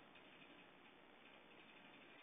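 Near silence: faint steady background hiss of the recording line.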